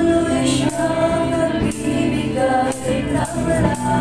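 A praise and worship song sung by a woman into a microphone over musical accompaniment, amplified through the hall's sound system.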